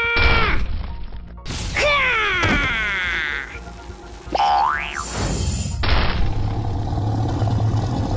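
A string of cartoon sound effects: a held tone that cuts off in the first half-second, a long falling whistle-like glide about two seconds in, a quick rising boing a little after four seconds, then a short hiss and a steady low rumble through the last seconds.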